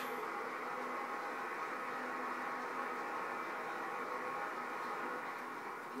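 Steady room noise: an even hiss with a faint constant hum, with no distinct sounds standing out.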